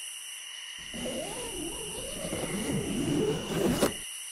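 Steady high chirring of night insects. From about a second in, a louder low sound with a wavering pitch that rises and falls sets in, ending with a click near the end.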